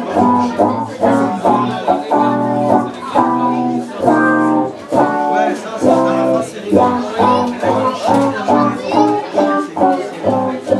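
Live band playing an instrumental passage, electric guitar leading over bass and drums in a steady rhythm, heard from among the crowd.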